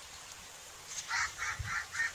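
Indian peafowl calling: a rapid run of short, repeated calls, about four a second, starting about a second in.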